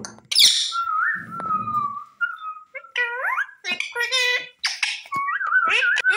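Rose-ringed (Indian ringneck) parakeet vocalising: a sharp screech just after the start, then a long whistled note, then a run of rising, whistly, speech-like calls.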